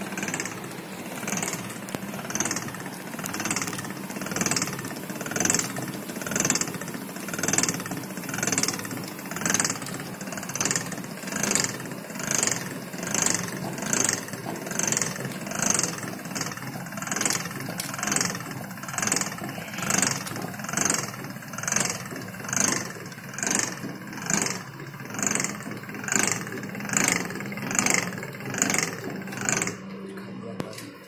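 Small twin-roller crushing machine running, its geared rollers turning over a yellow mash, with a steady hum and an even rhythmic pulse about one and a half times a second.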